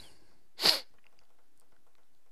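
A single short, sharp burst of breath from a person about two-thirds of a second in, the loudest sound here. After it come a few faint, light ticks of a pen stylus on a Cintiq drawing tablet.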